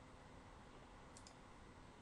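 Near silence: faint room hiss, with a quick double computer-mouse click a little over a second in.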